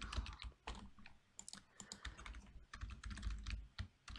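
Typing on a computer keyboard: a run of faint, unevenly spaced keystrokes.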